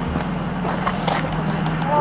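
Steady low hum of an idling car engine, with faint voices and a few small ticks over it.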